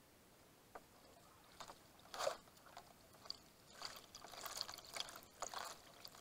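Kayak paddle dipping into the river: quiet, irregular splashes and drips of water, loudest about two seconds in, with a run of splashes near the end.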